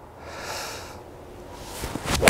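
A golfer's breath out through the nose, a soft hiss lasting about a second, as he settles over the ball before swinging.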